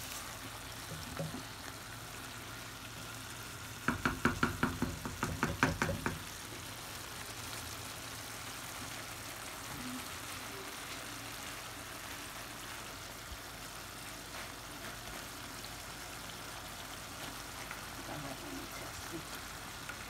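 Prawn and potato curry sizzling and simmering in a pan, a steady low hiss. About four seconds in comes a quick run of sharp knocks, roughly six a second for about two seconds.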